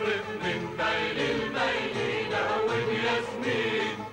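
A chorus of voices singing a Lebanese song together over instrumental accompaniment, with rhythmic hand clapping.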